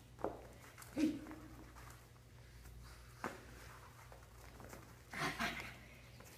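A dog playing tug with a person on a hard floor: scuffling, a couple of sharp clicks and knocks, and two short vocal sounds, about a second in and near the end, over a steady low hum.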